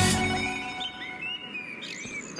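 Guitar music fading out in the first half-second, then small birds chirping: short, quick rising and falling calls.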